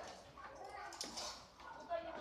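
Indistinct voices of people talking, with a light clatter of a dog's paws on a wooden slat-mill treadmill.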